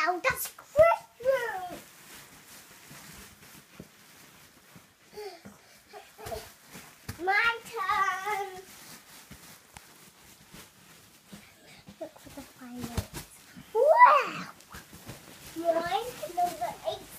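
Young children's wordless voices, rising squeals and babble, in three short outbursts: near the start, around halfway and near the end. Between them are short soft knocks, such as bodies rolling and bumping on a mattress.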